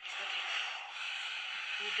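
Steady background noise that switches on abruptly, with a woman's voice starting to speak near the end.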